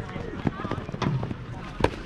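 Jugger players shouting to each other across an open field, with a few sharp knocks between the calls; the loudest knock comes near the end.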